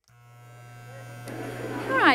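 A steady electrical hum and buzz fading in out of silence, growing louder, with a voice starting near the end.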